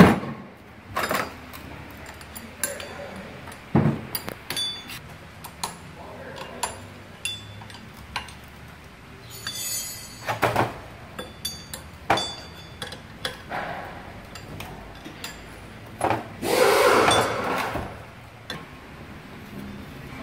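Scattered metallic clinks and taps of a wrench, nuts and a steel disc as a homemade steel jig is bolted to a wheel hub bearing for pressing the hub out. About 16 seconds in there is a louder, longer clatter and scrape of metal.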